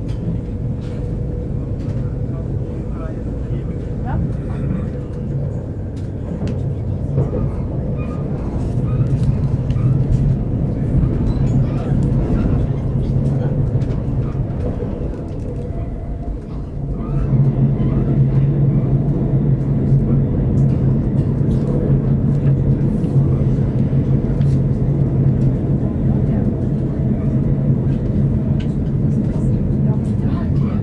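Electric commuter train running at speed, heard from inside the carriage: a steady low rumble and motor hum that gets louder a little past halfway through.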